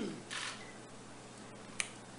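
Quiet room with a brief hiss about a third of a second in and a single sharp click near the end.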